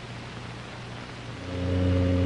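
Faint hiss, then about a second and a half in a steady low electric hum with a row of even overtones starts and holds.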